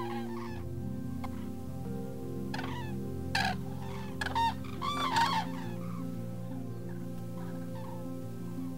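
Common cranes (Grus grus) calling: a run of loud, pitched calls in quick succession, with the loudest about four and a half to five and a half seconds in.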